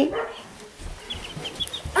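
Baby chicks peeping: a quick run of short, high peeps in the second half.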